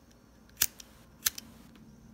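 Two sharp clicks about two-thirds of a second apart, each followed closely by a fainter one, over quiet room tone.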